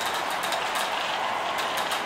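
Glass marbles rolling along a marble-race track, a steady rolling sound.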